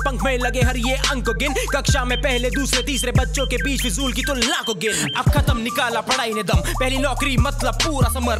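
Hindi hip hop track: rapping over a beat with a heavy, sustained bass. The bass cuts out for about two seconds just past the middle, then comes back.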